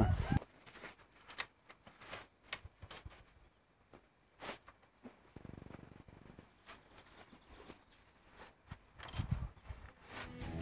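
Faint, scattered clicks and light knocks of hand work on a rusty vehicle chassis, with a quiet shuffling stretch in the middle and a little more handling noise near the end.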